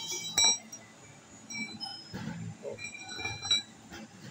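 Steel chisel bit of a gasoline jackhammer clinking against the concrete floor and the breaker's chuck as it is handled. There is one loud clink about half a second in, and a few lighter knocks later on.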